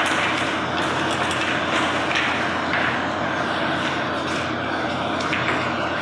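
Steady, even background hiss of a meeting room, with a few faint soft clicks and rustles.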